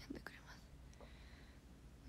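Near silence: quiet room tone, with the soft, breathy tail of a young woman's voice just at the start and a faint click about a second in.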